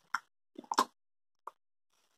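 Closed-mouth chewing of soft salty liquorice candy: a few short, wet lip smacks and pops, two clustered near the middle and one more later, with quiet chewing between them.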